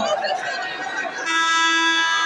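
Arena crowd chatter, then a bit over a second in a steady horn blast starts and holds at one pitch: a basketball arena's game horn.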